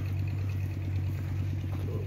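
An engine running steadily at a constant speed: a low, even hum with a fast regular throb.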